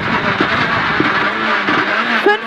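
Citroën C2 R2 Max rally car's engine and road noise, loud inside the cabin, as the car brakes hard from high speed for a corner.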